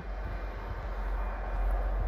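Low, steady motor-vehicle engine rumble heard from inside a closed car cabin, growing slightly louder.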